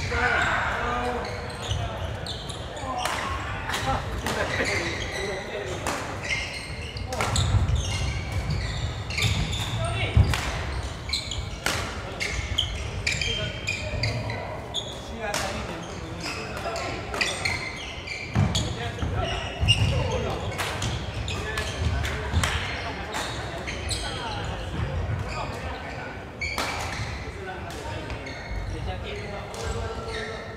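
Badminton rallies: rackets striking a shuttlecock with sharp cracks at irregular intervals, along with players' footfalls thudding on a wooden court, in a large echoing hall with background chatter.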